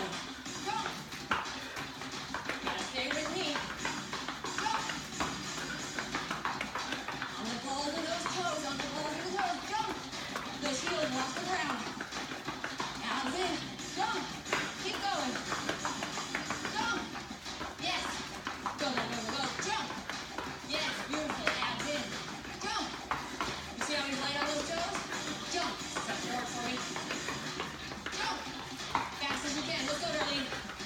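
Music and a voice, with quick, light footfalls of sneakers on the floor from running in place.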